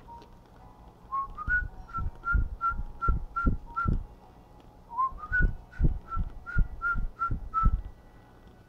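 A person whistling a tune in two short phrases of quick notes, about three a second, each phrase opening with an upward slide. A low thump comes with each note.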